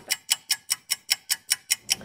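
Rapid, evenly spaced ticking, about five crisp ticks a second, in the manner of a sped-up clock-tick sound effect.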